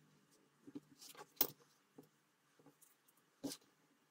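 A few scattered light clicks and taps as small craft pieces are handled and set down on a work table. The sharpest click comes about a second and a half in, and another comes near the end.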